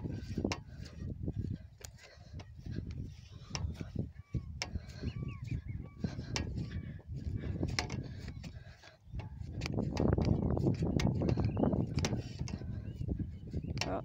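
Wind buffeting a phone microphone outdoors, with short clicks and rustles as the person walks through paddock grass; the buffeting is heaviest from about ten seconds in. A few faint bird calls come through about four to five seconds in.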